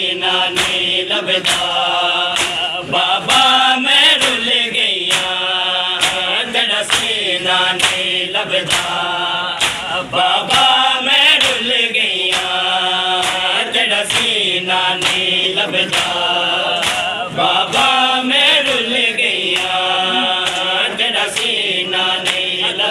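Crowd of male mourners chanting a Punjabi noha together, with a steady beat of hands striking bare chests (matam) running under the chant.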